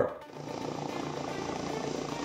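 Helicopter running on the ground, its engine and rotor giving a steady, even sound.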